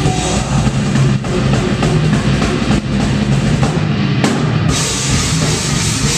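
Metalcore band playing live: distorted electric guitars and bass over a drum kit with steady, driving hits, loud and dense throughout.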